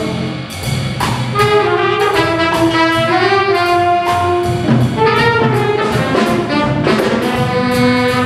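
School jazz big band playing live: saxophones, trombones and trumpets in held chords that move every second or so, over upright bass and a steady beat of sharp drum and cymbal strokes.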